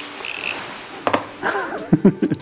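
Plastic packaging rustling briefly, then a click and a short laugh near the end.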